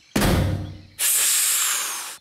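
Cartoon sound effect of the crashed flying saucer's engine: a rough sputtering burst, then about a second of steady hiss like escaping steam that fades away, the sound of a broken engine.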